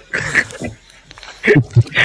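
A man laughing in short bursts, two clusters of them with a quieter gap between.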